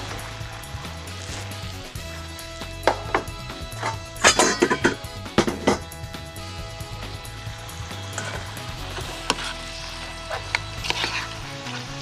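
Soft background music under the clatter and scrape of metal pans and utensils being handled, with a cluster of sharp knocks about three to six seconds in.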